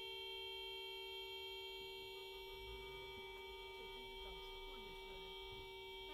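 A car horn held down in one long, steady blast.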